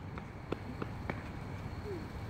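Quiet outdoor background with four faint light taps spread over the first second or so, then a short faint rising squeak near the end.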